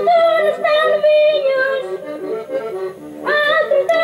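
Traditional Portuguese folk music led by an accordion playing the melody in long held phrases, a new phrase starting about three seconds in.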